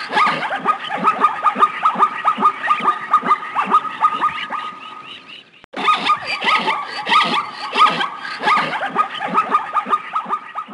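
Rapid, repeated animal calls, several a second and fairly loud. They fade and stop a little past halfway, then start again abruptly.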